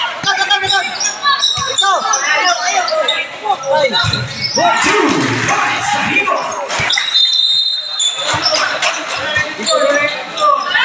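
A basketball being dribbled and bounced during live play, with players and spectators calling out, echoing in a large covered court.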